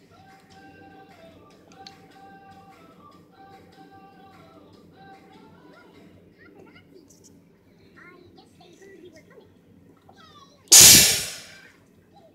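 A faint pop song with a sung 'oh-oh' melody plays through a TV speaker over about the first half. Near the end comes one loud, sudden bang that dies away over about a second.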